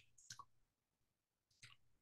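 Near silence: room tone with two faint, short clicks, one about a third of a second in and one near the end.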